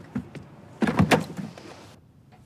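A brief clunk and clatter about a second in, with a small click just before it, like a door or furniture being moved.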